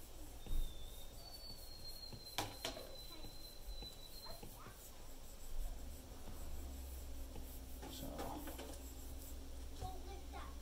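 Faint taps and strokes of an Apple Pencil tip on an iPad screen, with one sharp click. A thin high whine sounds for about three seconds near the start, and a low hum comes in about halfway through.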